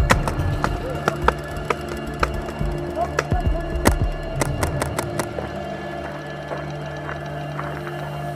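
Background music with steady sustained tones, over which a rapid, irregular run of sharp paintball marker shots cracks through the first five seconds or so, then stops.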